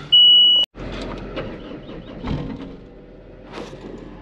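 Caterpillar 299D XHP compact track loader, heard from inside its cab: a single loud, high electronic beep lasting about half a second, then the diesel engine running low and steady as it warms up, with a few light clicks and knocks.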